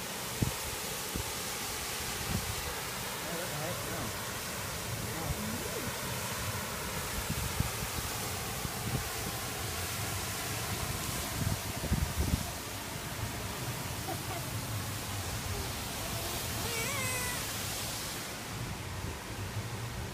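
Steady rushing hiss of a waterfall's falling water and spray, with some low buffeting about halfway through. Near the end a small child gives a few short, high, wavering cries.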